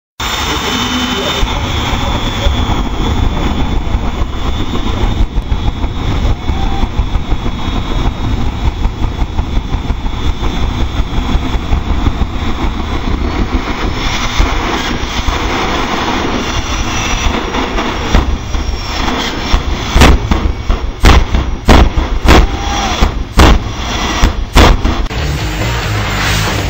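Jet dragster turbojet engines running loud. About 20 seconds in comes a series of sharp afterburner blasts, roughly one every 0.7 seconds.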